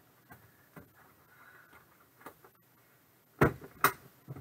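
A few light clicks of handling, then two sharp knocks about half a second apart near the end as the metal briefcase-style card box is shut.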